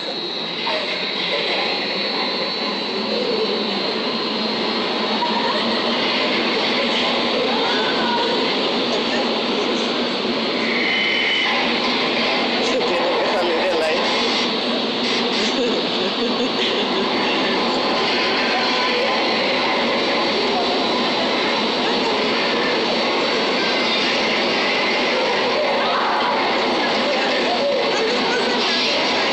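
Hurricane simulator's blower driving a loud, steady rush of wind through the booth, with a thin high whine on top. It builds over the first few seconds as the displayed wind speed climbs from about 33 mph to over 60 mph, then holds.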